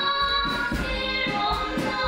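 Children's song: girls singing over instrumental accompaniment with sustained notes and a steady beat.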